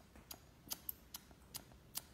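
Hairdressing scissors snipping the hair ends at the edge of a short bob on a mannequin head: about six sharp, unevenly spaced snips in two seconds.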